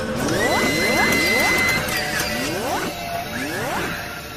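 Intro music with mechanical sound effects: a series of rising sweeps, a steady high tone held for about a second and a half early on, and scattered sharp clicks.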